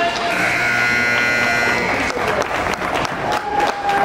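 An ice rink's buzzer horn sounds once, a steady buzzy tone lasting nearly two seconds. It is followed by a run of sharp knocks, with voices around the rink.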